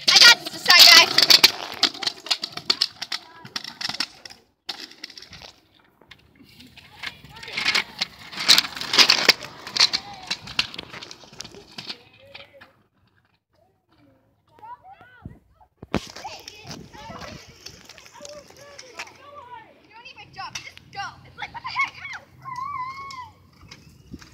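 Kick scooter wheels rolling on concrete in two rushes, one at the start and one about eight seconds in. Children's voices call faintly in the later part.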